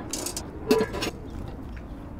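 Metal handling noises from a stainless steel brew kettle as its lid and copper immersion chiller coil are lifted off and the lid set back on: a short clatter near the start and a louder clank a little under a second in, over a steady low hum.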